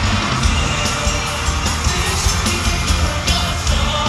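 Live pop song played loud through a concert PA: male voices singing over backing music with a strong bass and steady drumbeat, with the audience cheering and yelling along.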